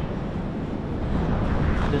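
Low, uneven rumble of wind buffeting an action camera's microphone.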